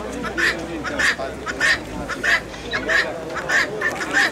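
Domestic fowl calling over and over in a steady rhythm, about one and a half short nasal calls a second, with people's voices murmuring underneath.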